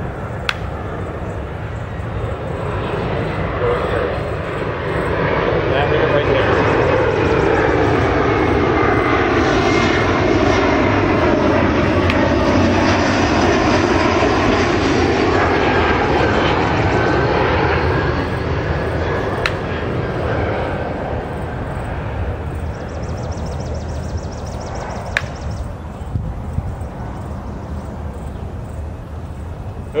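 An aircraft flying overhead: its engine noise swells in over a few seconds, stays loudest for about ten seconds in the middle, then slowly fades away.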